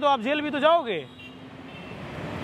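Speech for about the first second, then a car driving past on the street, its tyre and engine noise slowly rising.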